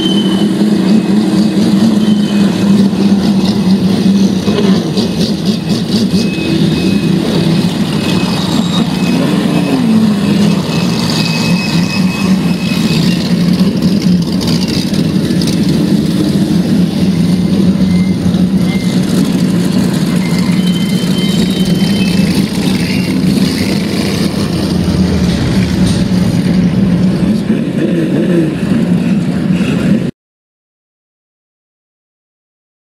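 Limited sportsman speedway cars' engines running at low revs in a steady drone as the cars roll slowly on the dirt, with a short rise and fall of revs about ten seconds in.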